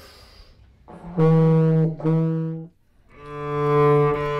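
A breath drawn in, then a student playing long held notes on a brass instrument: two notes of the same pitch about a second each, then a slightly lower note that swells in loudness near the end.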